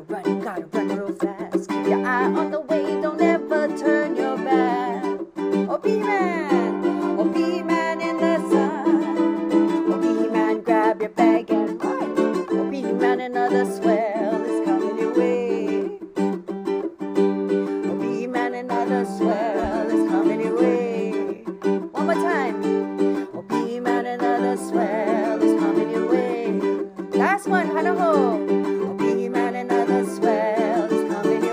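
A ukulele strummed as accompaniment to a woman singing, running steadily through a repeated closing verse.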